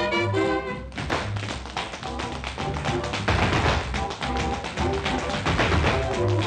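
Tap dancers' shoes on a hard tile floor beating out rapid, dense tap steps from about a second in, after a held brass chord from a jazz orchestra breaks off; the band keeps playing underneath the taps. Early-1930s film soundtrack.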